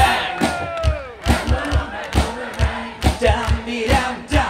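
A live rock band breaks off at the end of a song, with a note sliding down in pitch, then a repeated kick drum beat plays under a crowd shouting and chanting along.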